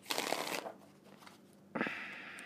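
A deck of tarot cards being shuffled by hand: a short burst of shuffling, a pause, then a second burst starting near the end.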